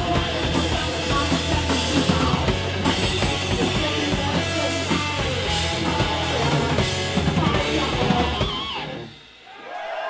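A heavy metal band playing live on distorted electric guitar, bass and drum kit. The song stops about nine seconds in, and the crowd starts to make noise as the band goes quiet.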